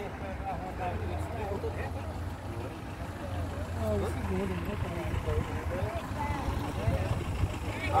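Several people talking at a distance, their voices faint and overlapping, over a low steady rumble.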